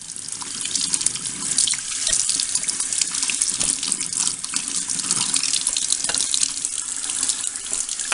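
Warm tap water running from a bathroom faucet and splashing over a plastic printhead into the sink basin, a steady hiss that grows louder about a second in as the stream hits the part.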